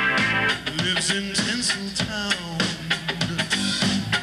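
Rock band playing: guitar over a drum-kit beat.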